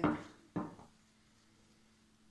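Wooden rolling pin knocking twice on the worktop, about half a second apart, as strips of buttery laminated dough are rolled out.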